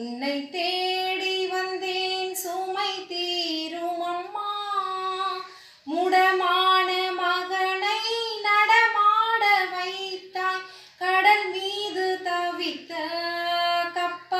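A woman singing a Tamil hymn to Mary solo and unaccompanied, holding long notes, with short breaks for breath about six and eleven seconds in.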